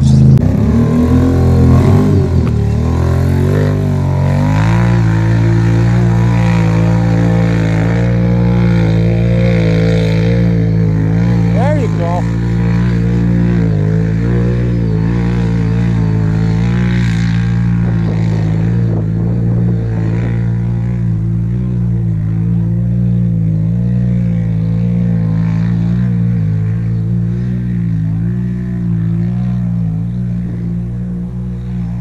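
Can-Am Renegade ATV's V-twin engine revving up, then held at high, nearly steady revs for a long stretch, as when a quad is stuck in deep mud with its wheels spinning.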